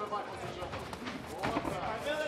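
Arena crowd noise and scattered shouting voices from around an MMA cage, with one sharp knock about one and a half seconds in.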